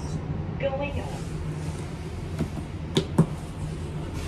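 Otis scenic glass elevator car travelling in its shaft: a steady low hum, with a few sharp clicks near the end, the loudest about three seconds in.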